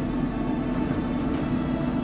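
Steady low hum with a constant tone from a running Traeger pellet grill, its combustion fan going.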